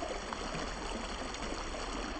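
Water cascading down the stone steps of a fountain into a pool: a steady rush of falling water.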